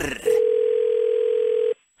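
Telephone ringback tone heard over the phone line: one steady ring of about a second and a half that stops as the call is picked up.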